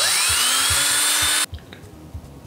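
Cordless drill boring into a bar of soap: a loud whirring whine that rises in pitch as the motor spins up, then levels off and cuts off suddenly about a second and a half in.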